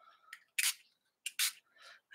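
Pump spray bottle of ink spritzing onto paper, three short hissing spritzes in quick succession and a fainter one near the end.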